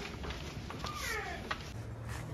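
A young child's high-pitched whining cries, sliding up and down in pitch, twice, the second drawn out and falling, over the murmur of a crowd.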